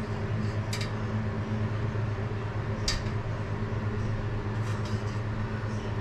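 A steady low machine hum, with two brief light clicks about one and three seconds in from a small screwdriver picking at the brass tone holes of a tenor saxophone body.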